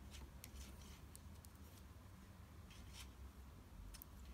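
Faint, irregular light clicks and scrapes of metal knitting needles working yarn, over a low steady hum.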